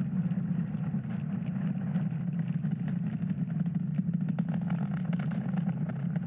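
Falcon 9 rocket's nine Merlin 1D engines during ascent: a steady, deep rumble with crackling.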